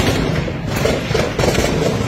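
Gunfire: about five sharp shots at uneven intervals roughly half a second apart, over a steady low rumble.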